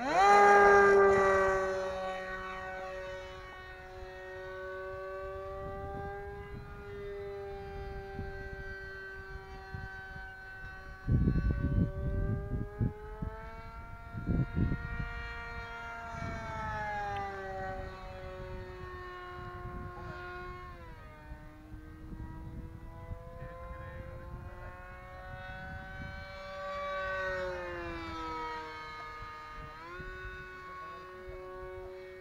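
Electric motor of an E-flite Scimitar radio-controlled model plane whining, rising sharply in pitch and loudness as it is throttled up for takeoff from the water. The steady whine then wavers up and down in pitch as the plane flies around, falling in pitch twice as it sweeps past.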